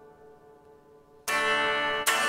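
Electric guitar chord ringing out and fading, then a loud strummed chord comes in suddenly a little over a second in and rings on.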